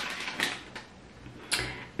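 Handling sounds from a plastic sheet-mask sachet being moved: a few light clicks and a soft rustle, then one sharp click about one and a half seconds in.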